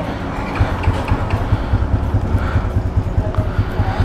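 Yamaha LC135 moped's single-cylinder four-stroke engine idling, a rapid, steady low pulsing.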